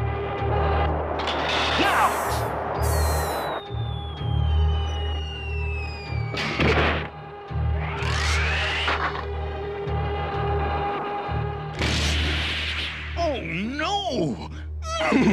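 Cartoon action-scene soundtrack: a held music drone under sound effects of a crashing aircraft. A long falling whistle runs from a few seconds in, and several sudden crashes come about a second in, midway and near the end. A rising sweep comes in between.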